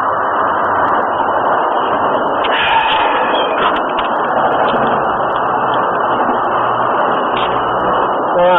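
Wind buffeting a small camera microphone outdoors: a steady, loud rushing with a few brief knocks.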